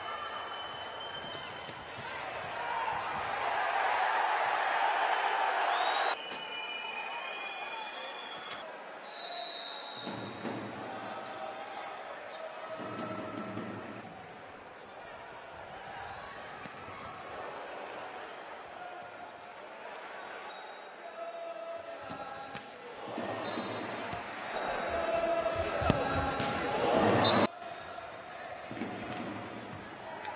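Futsal game sound in an indoor arena: the ball being kicked and bouncing on the court, with short high squeaks and the crowd's noise swelling. The crowd is loudest in two surges, one a few seconds in and one near the end, and each cuts off suddenly.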